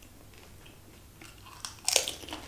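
Close-miked eating sounds: faint chewing and mouth clicks, then a loud, crunchy bite near the end.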